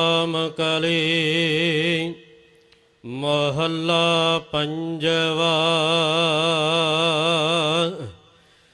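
Gurbani kirtan: a voice holding long, wavering sung notes over a steady accompanying tone, in two drawn-out phrases with a break of about a second between them, about two seconds in.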